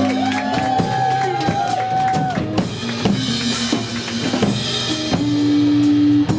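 Rock drum kit played live, a run of snare and bass-drum hits right after the drummer is introduced, over sustained low notes from the band.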